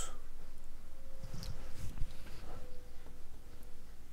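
1935 Philco 54C tube radio warming up with no station yet, giving only a low steady hum, with a few faint knocks.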